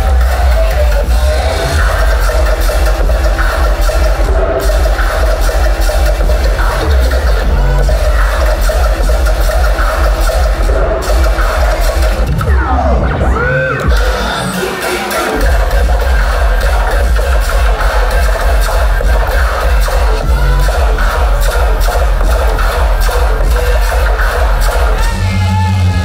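Loud dubstep played as a DJ set, with a heavy sub-bass. About twelve seconds in, a sweeping pitch glide leads into a short break where the bass drops out, and the bass comes back in about fifteen seconds in.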